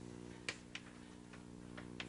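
Chalk tapping and clicking against a blackboard as small symbols are written: a handful of short, irregular clicks, the loudest about half a second in. A steady low electrical hum runs underneath.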